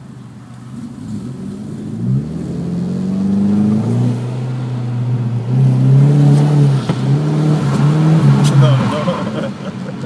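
Ford Mustang 5.0's V8 being revved hard through donuts, heard through the windshield of a nearby parked car. It climbs in pitch about two seconds in, then rises and falls, and is loudest around the middle to late part.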